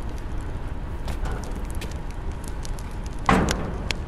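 A door shut firmly with a single loud bang about three seconds in, over a steady low background rumble.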